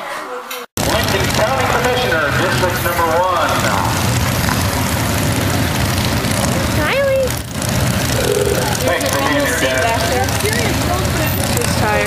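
Loud outdoor street-parade ambience: a steady engine rumble with the voices of people around, and a short rising tone about seven seconds in. The sound cuts in abruptly less than a second in, replacing quieter indoor room sound.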